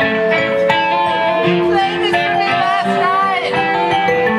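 Live band playing: guitar and keyboard/synth with sustained notes, and a wavering, bending melody line higher up about halfway through.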